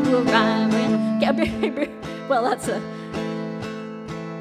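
A live folk song: a small acoustic guitar strummed in a steady rhythm, with clarinet and a woman's voice carrying the melody over held notes. The playing eases off and gets quieter over the last two seconds.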